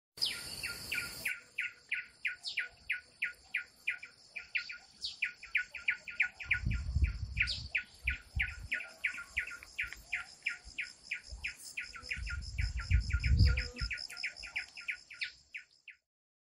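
Bird chirping: a fast, even run of short descending chirps, about four a second, with a few higher sweeping notes over it. A hiss fills the first second, and a low rumble comes twice, about halfway and near the end.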